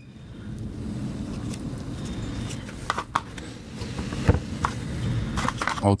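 A steady low background rumble, with a few small clicks and taps as a tiny screwdriver and a plastic USB stick case are handled: two about three seconds in and a sharper one a little after four seconds.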